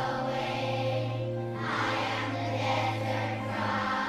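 A slow song sung by voices, with long held notes over a steady low accompanying note; the sung line moves from "I am the river flowing" to "I am the desert dry".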